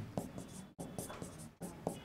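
Pen writing on an interactive smart-board screen: a run of short, faint taps and scratches as handwritten words are added.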